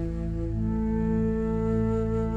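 Calm, slow background music of long held notes; new notes come in about half a second in and sustain.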